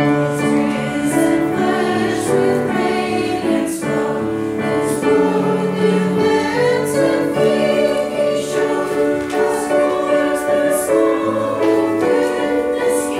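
Church choir singing, with a piano accompanying, the sustained chords moving from note to note about once a second.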